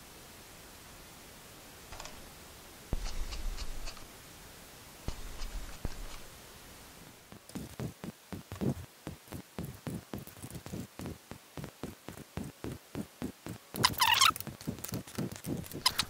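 Hand screwdriver driving screws into a plastic central vacuum hose handle. A few scattered knocks are followed by about six seconds of quick clicks, around four a second, as the screw is turned, and then a brief squeak.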